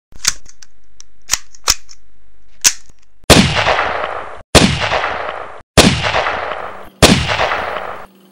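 Gunshot sound effect for an animated intro: a few sharp clicks, then four loud shots about a second and a quarter apart, each with a long echoing tail that is cut off abruptly.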